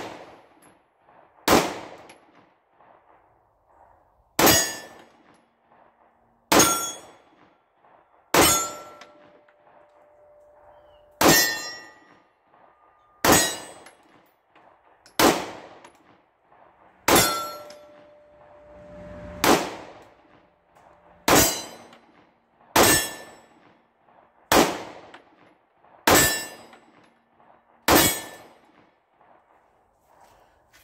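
A PSA Dagger 9mm compact pistol firing 124-grain full metal jacket rounds in slow, aimed fire: fourteen shots, one every two seconds or so. Several shots are followed by the ringing of a steel target being hit.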